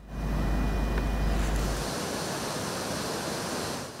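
Steady outdoor rushing noise with no voice. A heavy low rumble on the microphone fills the first two seconds, then drops away, leaving an even hiss.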